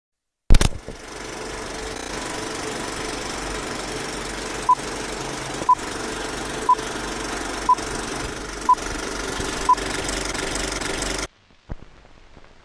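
Film countdown leader: a film projector running with a steady clatter, punctuated by six short beeps one second apart, one beep per count. It starts with a sharp click and cuts off suddenly near the end.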